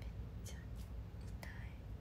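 A woman's faint whispered sounds and breaths, a few short soft bursts over a low steady hum.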